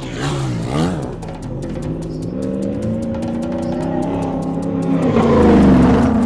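Rally car engine revving hard: the note dips and climbs again in the first second, then climbs steadily and is loudest near the end.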